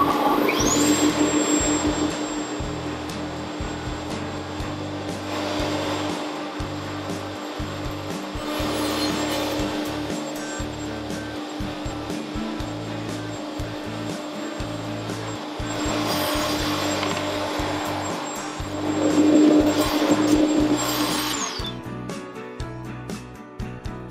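Table-mounted router motor starting up with a rising whine and running steadily at high speed while a keyhole bit cuts shallow recesses for T-bolt heads into the underside of a board. Several louder stretches of cutting, the loudest near the end, then the motor spins down.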